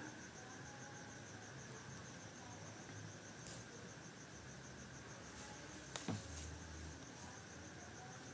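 Faint steady high-pitched pulsing trill, like a chirping insect, over quiet room tone, with a single soft knock about six seconds in.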